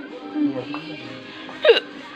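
Music with indistinct voices, and one short, loud vocal sound sweeping down in pitch near the end, like a hiccup or a yelp.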